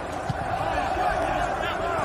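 Stadium ambience on a football broadcast: a steady murmur with faint, distant shouting voices.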